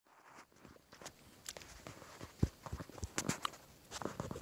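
Handling noise as a phone is set in place on a mossy rock among dry leaf litter: irregular clicks, rustles and knocks, the sharpest knock a little past halfway.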